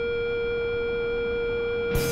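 A single steady held tone, like a synthesized drone, holding level with faint bell-like overtones. A fuller music track with a low bass note comes in right at the end.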